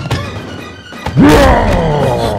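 Horror film soundtrack: quiet, tense score, then a sudden loud jump-scare hit about a second in. A pitched cry rises and then slides down in pitch with it.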